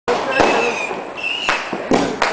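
Fireworks going off with three sharp bangs: one about half a second in, one at about a second and a half, and one just before two seconds.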